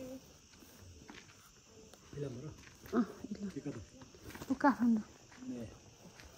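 A few short bursts of a person's voice, about two seconds in and again near the end, over a steady high-pitched chirring of crickets.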